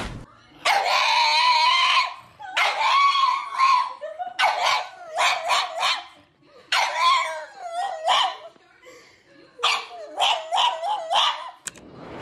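A pug howling: two long, wavering high calls, then three quick runs of short yips.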